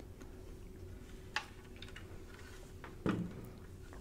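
Faint low hum with a few small clicks, one sharp click about a second and a half in and a duller knock about three seconds in.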